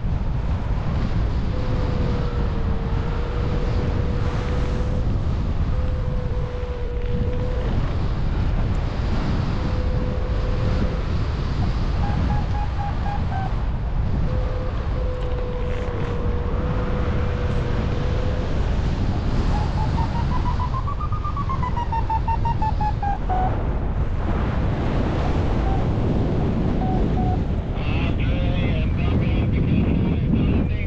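Wind rushing over the microphone in paraglider flight. Under it, a variometer's electronic tones: a steady low tone in stretches through the first half, then short beeps, and about two-thirds through a run of beeps that climbs and then falls in pitch.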